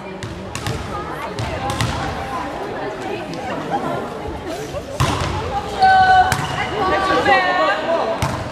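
Players and spectators talking and calling out over each other, with scattered thuds of a volleyball bounced on the court floor and a sharp hit on the ball about five seconds in. Louder calls and shouts follow near the end.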